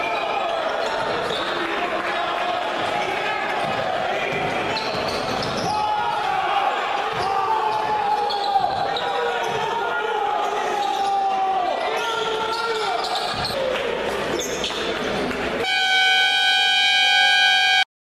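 Basketball game in a gym: players' and crowd's voices and shouts with a ball bouncing, then near the end a scoreboard buzzer sounds one steady, loud tone for about two seconds and cuts off. It is the final buzzer, with the clock run out at 00:0 in the fourth period.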